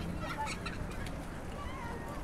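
Busy pedestrian street ambience: a steady low hum of crowd and city, with a few short high-pitched calls, about half a second in.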